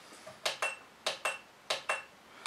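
Front-panel controls of a Wanptek TPS605 bench power supply being worked: sharp clicks, about three pairs, some followed by a short high-pitched beep from the unit.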